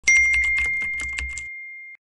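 Typewriter-style typing sound effect: a high bell-like ding that rings on and fades out, over a quick run of key clicks, about eight a second, that stops after about a second and a half.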